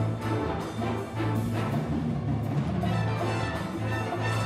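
Jazz big band playing live: trumpets and trombones play together over piano, bass and drums, with a steady beat and a bass line moving note to note.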